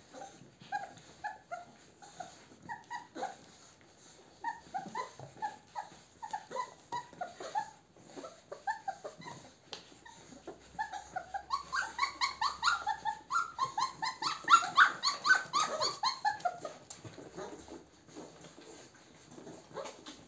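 Four-week-old Weimaraner puppies whining and yipping in short, high, falling cries, several a second. The cries come thicker and louder from about halfway through, then die away shortly before the end.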